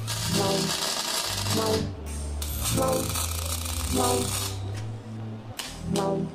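Welding arc crackling in two long bursts of about two seconds each, with a short break between and a brief one near the end, over background music with a steady beat.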